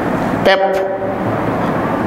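Steady noise of a passing motor vehicle, with a man's voice drawing out one word through a microphone about half a second in.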